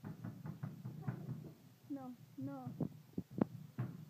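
Light, irregular knocks from a toddler's feet stamping on a glass tabletop as she dances, about three or four a second, with two short, slightly falling vocal sounds from the child in the middle.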